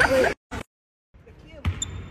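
Voices that cut off suddenly, a short gap of silence, then a basketball bouncing once on a hardwood gym floor near the end.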